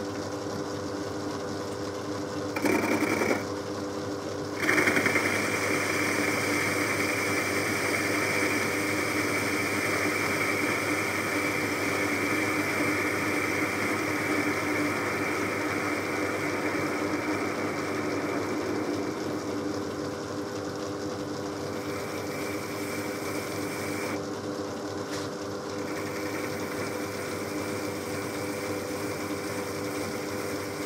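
Myford ML7 lathe running with a steady hum from its motor and drive, while a tool faces off the end of an aluminium bar. The hiss of the cut comes in briefly about 3 s in, then runs from about 5 s on, with short breaks later.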